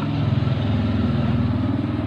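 An engine idling: a steady, low, pulsing drone.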